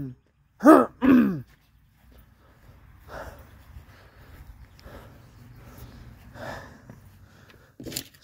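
A man's voice makes two short wordless sounds with falling pitch about a second in, then only faint, irregular rustling while he moves about.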